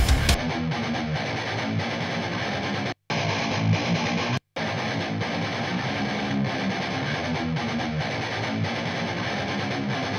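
Electric guitar played through a guitar amp cabinet and picked up by a microphone set near the edge of the speaker: a rhythmic riff with little top end, broken by two short gaps about three and four and a half seconds in.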